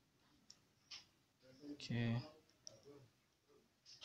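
A few faint, sharp clicks as a smartphone's on-screen keyboard is tapped, with a brief vocal sound from a man about two seconds in, the loudest thing heard.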